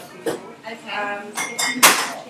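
Metal bar tools clinking: a steel jigger knocking against a steel cocktail shaker tin during measuring. There are a few light clinks with a brief metallic ring, and the sharpest, loudest clink comes near the end.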